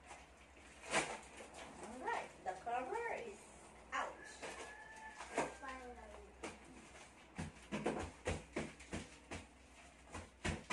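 Cardboard and packing being handled while a large cardboard box is unpacked: irregular crackles, rustles and knocks, coming thicker in the second half. There are short high-pitched vocal sounds about two seconds in and again around five seconds.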